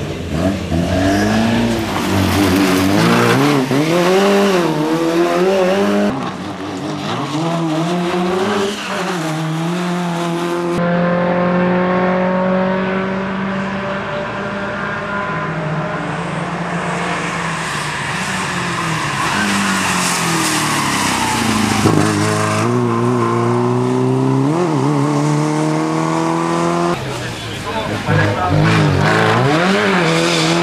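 Historic rally car's engine driven hard: repeatedly revving up and dropping back through gear changes, with one long high, fairly steady run in the middle lasting about ten seconds. The sound changes abruptly several times where the shots cut.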